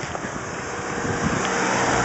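Wind rushing over the microphone while riding a bicycle down a hill, a steady noise that grows louder as the bike picks up speed.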